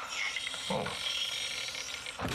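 An office chair's gas-lift seat sinking under the sitter, a steady mechanical sound as the worn-out height adjustment lets the seat drop.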